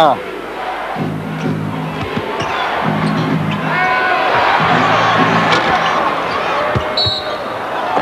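Arena crowd noise during live basketball play, swelling louder through the middle. Low sustained musical notes come in short spells about every two seconds, and a basketball bounces on the court.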